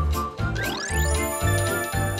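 A bright, upbeat TV-show title jingle with a steady bass beat about twice a second. A rising glide sweeps up in the first second, under held, bell-like chiming tones.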